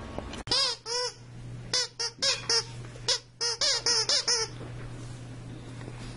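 Squeaker in a plush dog toy squeezed by hand, giving about a dozen short, high squeaks in quick runs that stop about four and a half seconds in.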